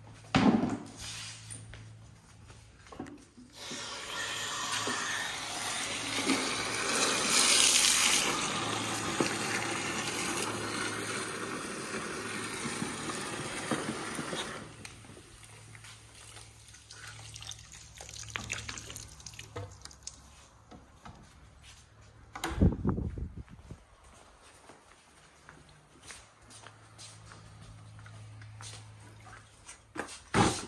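Water from a garden hose running into a plastic bucket for about ten seconds, starting a few seconds in and then shutting off. There is a thump near the start and a louder, deeper thump about two-thirds of the way through.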